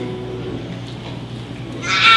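Live worship band playing soft, sustained instrumental music. Near the end, a loud held note with rich overtones comes in.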